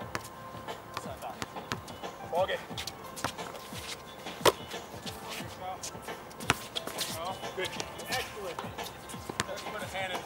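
A basketball bouncing on a hard outdoor court: a few separate sharp bounces, the loudest about four and a half seconds in and another about two seconds later.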